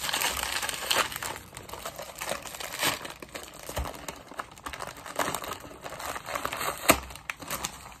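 Biscuit packet being torn open and crinkled by hand: a run of irregular crackles and rustles, with a sharp snap about seven seconds in.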